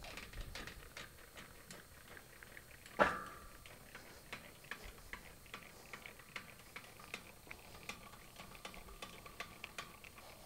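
Boat trailer's jockey wheel being wound by its crank handle: a run of faint, irregular metallic ticks from the winding mechanism, with one louder clank about three seconds in.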